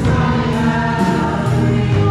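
Church choir singing a slow worship song over instrumental accompaniment, with held chords and a steady beat.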